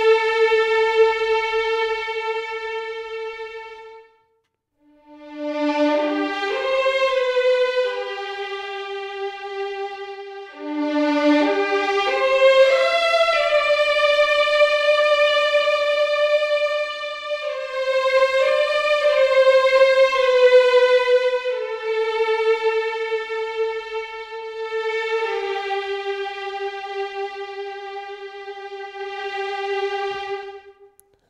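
Cinematic Studio Strings first-violins section, a sampled orchestral violin library played from a keyboard on its sustain patch, playing a slow melody of long held notes joined by short legato slides. It breaks off briefly about four seconds in and fades near the end. The sound is dry, with no added reverb or processing beyond a limiter.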